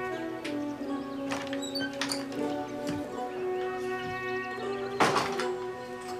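Slow, sad background music of long held notes, with a few light knocks and one loud thump about five seconds in.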